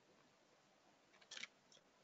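Near silence, broken by one faint, brief noise about two-thirds of the way through.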